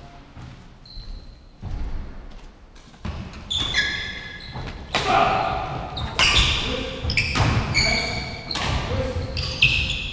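Badminton doubles rally: rackets striking the shuttlecock about once a second from about three seconds in, with shoes squeaking on the wooden court floor between shots, echoing in a large hall.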